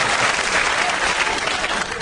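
Studio audience applauding, slowly dying down.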